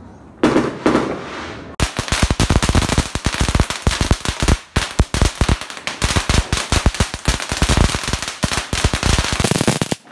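A long string of firecrackers going off: a fast, dense crackle of sharp bangs that starts about two seconds in and runs for about eight seconds.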